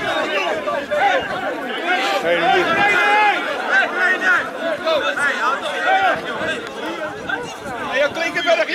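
Several men's voices shouting and talking over one another at once, raised and overlapping throughout, as players argue and are pulled apart in a scuffle.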